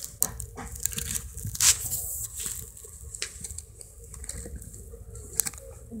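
A plastic toy spring being handled: its coils give faint, scattered clicks and rustles.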